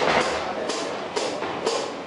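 Drum-kit hi-hat struck with a stick four times at an even, unhurried pace, each a bright, short hit, marking the offbeat.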